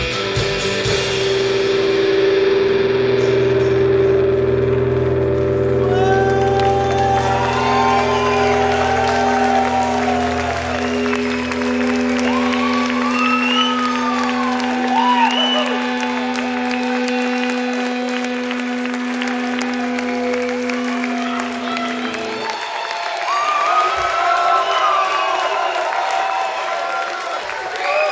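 A rock band's final held chord rings steadily on amplified instruments and cuts off sharply about three-quarters of the way through, ending the song. From about six seconds in, the audience cheers, whistles and applauds, and this carries on after the chord stops.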